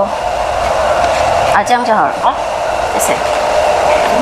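A steady rushing noise like blowing air, with a woman's voice briefly in the middle.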